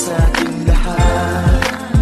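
Christmas pop song with a steady beat: a deep kick drum about three times a second under held bass and chord tones.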